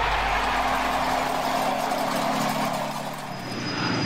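A sustained rushing swell from an animated logo intro's sound effect, with a low steady hum beneath it. It dies away about three seconds in, and a thin high tone sounds near the end.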